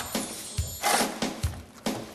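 Coal shovel scraping and knocking against the metal rim of a mock locomotive firebox door during coal-firing practice: a couple of sharp knocks with a rush of scraping between them.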